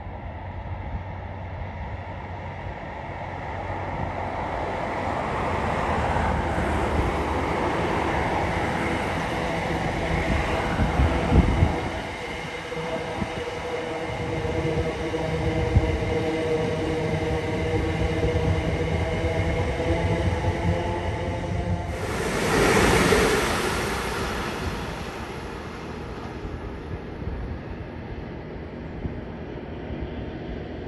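c2c electric multiple-unit passenger train passing close by on the rails: a rumble that builds as it approaches, with a steady whine through the middle. A brief, louder rush comes about three quarters of the way in, then the sound fades as the train goes away.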